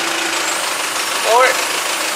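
Forklift engine running steadily at idle with a low, even hum.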